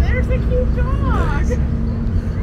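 Car ferry's engines running under way, a steady hum over a deep rumble. Short bits of passengers' voices rise over it near the start and around a second in.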